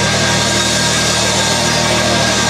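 Live rock band's distorted electric guitars and bass holding a loud, steady, sustained chord, with no distinct drum beats.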